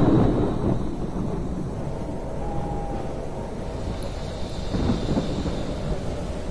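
A thunder rumble dying away over about the first second, followed by a steady hiss of storm rain.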